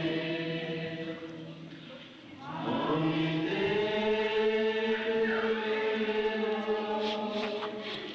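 Chanting: long sustained sung phrases that break off briefly about two seconds in, then resume with a rising glide into a new held note.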